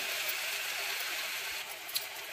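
A besan-battered roti roll deep-frying in a kadhai of hot oil, with a steady sizzle from the bubbling oil.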